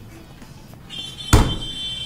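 A sharp thud of a hand slapping a tabletop quiz answer button about a second and a third in, the loudest event. A steady high electronic beep starts just before it and sounds on after it.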